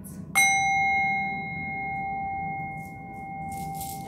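Brass singing bowl struck once a moment in, then ringing on with a steady low and high tone. Its upper shimmer dies away within about a second.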